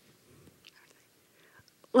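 Near silence with faint breaths and soft mouth sounds between phrases. A woman's speech resumes right at the end.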